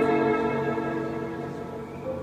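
Live chamber music: bowed strings and piano hold a chord that slowly fades away.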